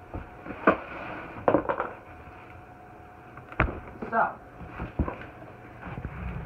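Handling noise from a large cardboard box: a few knocks and rubs, with a sharper thump about three and a half seconds in.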